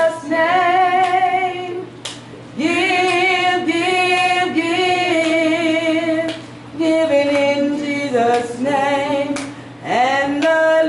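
A woman singing a slow church song, largely unaccompanied, in long held notes with vibrato; phrases of a couple of seconds each are broken by short pauses for breath.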